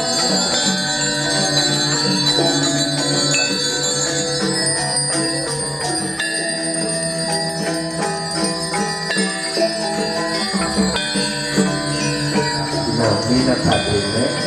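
Balinese gamelan playing: many bronze notes ringing and overlapping in quick, continuous succession over a steady low tone.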